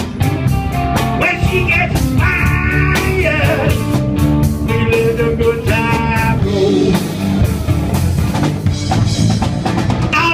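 Blues-rock band playing live through a PA: drums, bass and electric guitars keep a steady groove in an instrumental passage between verses, with a lead melody line bending in pitch over the top.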